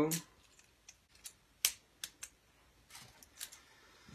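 A string of short, sharp plastic clicks and taps as a phone mount is handled and screwed onto the head of a small bendy tripod. The loudest click comes a little over a second and a half in, with fainter ones near the end.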